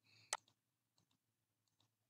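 Computer mouse clicking while dropdown values are picked: one sharp click about a third of a second in, then a couple of faint clicks, over near silence.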